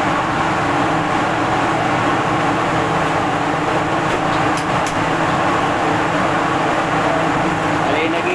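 Steady roar of a commercial gas wok range with its burners lit, holding at an even, loud level with a low hum underneath.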